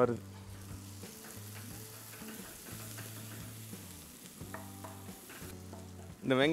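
Food frying in hot oil in a pot on a gas stove, a soft steady sizzle, stirred with a wooden spatula that scrapes and ticks faintly against the pot as the masala browns.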